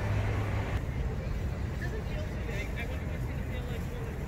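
Outdoor street ambience: a steady low rumble with faint, indistinct voices of people nearby.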